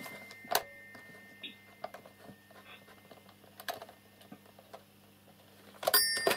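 A few scattered light clicks and taps, the clearest about half a second in, over a faint steady hum.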